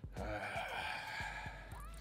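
A man's voice: a short 'uh', then a long breathy sigh lasting about a second.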